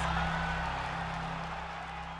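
Arena crowd noise under a low, steady music drone, both fading out steadily.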